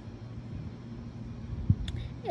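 Low, steady rumble of a distant engine with a faint steady hum, and one short knock near the end.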